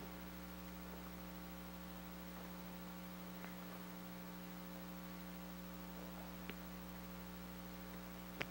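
Steady electrical mains hum, low and even, with a couple of faint ticks about three and a half and six and a half seconds in.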